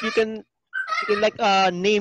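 People's voices over a video call: a short utterance at the start, then from about a second in a long drawn-out vocal sound held on a fairly steady pitch.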